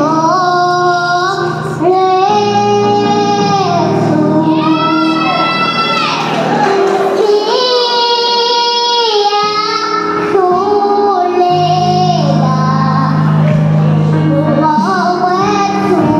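A young girl singing a Zulu gospel worship song into a microphone, in long held notes that glide between pitches, over low sustained backing notes that drop out for a few seconds midway.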